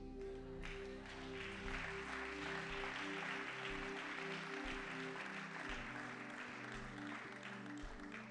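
Soft background music of sustained, slowly changing chords, with a soft noisy wash over it from about a second in that fades near the end.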